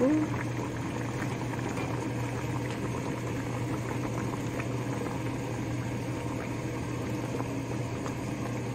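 A pot of pork kimchi jjigae bubbling at a steady boil, over a constant low hum, with a couple of faint clicks.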